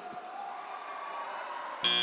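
Low arena din, then near the end a loud, steady high-pitched buzzer tone starts abruptly: the end-of-match buzzer of a FIRST Robotics Competition field as the match clock runs out.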